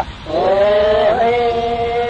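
A male qawwal's voice chanting a sung story: after a brief breath it glides up and holds one long steady note.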